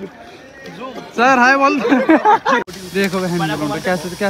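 Men's voices talking outdoors, in two stretches split by an abrupt edit cut about two-thirds of the way in.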